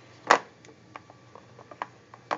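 A sharp knock about a third of a second in, then a few light clicks and taps as the plastic radiation-shield plates of a weather station are handled.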